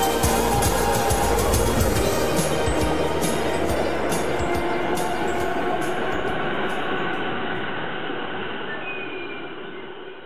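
Electric commuter train moving off from a platform, its running noise fading out, with the end of a song playing over the first few seconds.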